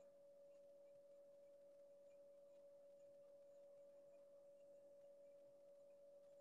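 Near silence, with a faint steady tone held at a single pitch.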